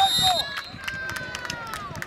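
A short, high referee's whistle blast at the start, followed by voices calling out, one of them a long call that slowly falls in pitch.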